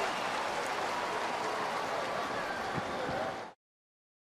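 Ballpark crowd noise, a steady din of the stadium crowd after the catch for the out. It cuts off suddenly about three and a half seconds in.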